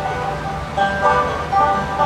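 Fiddle and banjo playing a folk tune together, the fiddle holding notes over the banjo.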